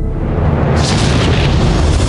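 Film-trailer sound effects: a deep boom and a rushing blast that swells up about three-quarters of a second in, over dramatic orchestral music.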